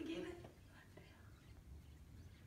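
Hushed voices: a short murmured phrase trailing off in the first half second, then faint low background noise.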